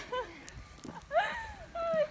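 Young women's high-pitched shouts and squeals during a snowball fight: a short call at the start, then a longer rising-and-falling shriek from about a second in.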